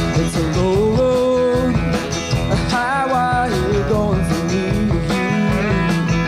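Rock band playing an instrumental passage between vocal lines: a guitar lead sliding and bending between notes over a steady drum beat and bass.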